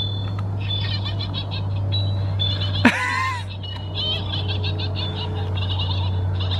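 Small sound module in a novelty package playing a spooky recording: rapid, repeated chirping and trilling with one sweeping cry about three seconds in, over a steady low hum.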